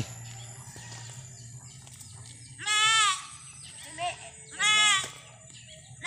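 Goat bleating twice, about two and a half seconds in and again two seconds later, each call about half a second long with a quavering pitch.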